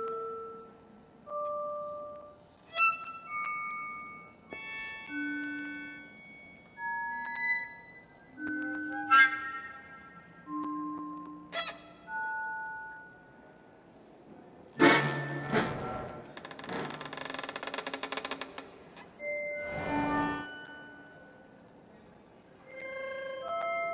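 Sparse contemporary chamber music for violin, flute and accordion with live electronics: short, isolated pitched notes, each about a second long, with pauses between. About two-thirds of the way in comes a louder, denser burst with a rapid fluttering pulse that lasts a few seconds.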